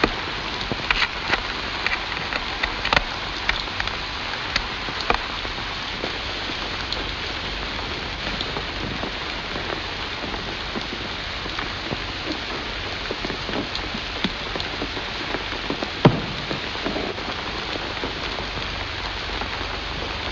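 Steady rain falling, with scattered drips and taps, and one sharp knock about sixteen seconds in.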